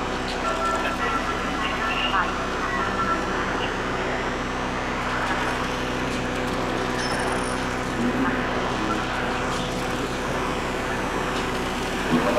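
Electroacoustic improvised music from synthesizers and live electronics: a dense bed of sustained drones at several steady pitches, with short high beeping tones in the first two or three seconds and a grainy, noisy texture thickening in the middle.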